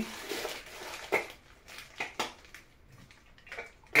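Small plastic toy packaging being handled as someone struggles to open it: a faint rustle, then a few short, separate clicks and crinkles.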